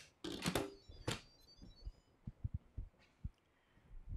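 Handling an Instant Pot Evo: a utensil clatters and scrapes in the inner pot for the first second or so, then a string of short, soft low knocks as the lid is fitted onto the cooker.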